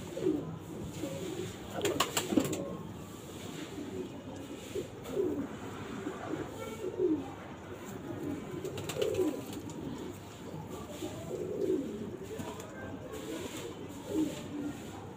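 Domestic pigeons cooing: short, low coos that slide down in pitch, repeated every second or two. A few sharp clicks come about two seconds in.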